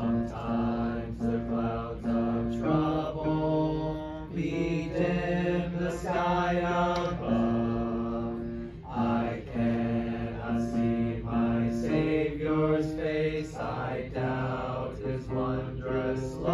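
A small congregation singing a hymn together in slow, held notes that change pitch every second or so.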